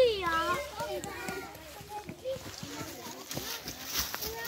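Young children's voices outdoors: a loud, high-pitched child's call right at the start, then quieter scattered chatter of children at play.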